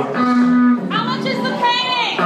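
A man's drawn-out wordless vocal sound: a long low held note, then higher rising cries near the end, over background guitar music.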